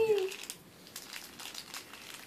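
Crinkling and rustling of a toy package being handled and opened by hand, in short irregular crackles, after a voice trails off at the start.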